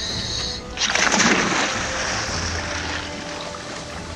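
A scuba diver splashing into the sea about a second in, followed by a rush of bubbling water that slowly fades, over background music.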